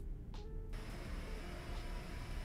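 Quiet background music with a few soft held notes. About two-thirds of a second in, a steady hiss of recorded background noise starts: the opening of a background-noise audio sample being played back.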